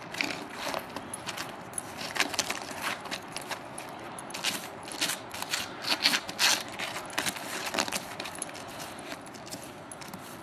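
A dog's claws digging and scraping at ice-crusted snow, with irregular quick scratches and crunches of the crust breaking up.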